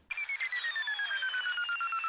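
Electronic sound effect: one pulsing tone, several pulses a second, gliding slowly down in pitch.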